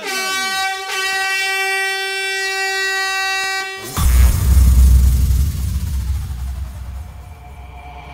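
A single steady horn tone held for about four seconds, then cut off by a sudden deep bass boom that fades away over the next few seconds under a slowly falling sweep: sound effects from a fairground-style jingle.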